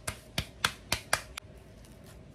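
Hands patting a ball of corn masa dough flat between the palms, a quick run of sharp slaps about four a second that stops about one and a half seconds in.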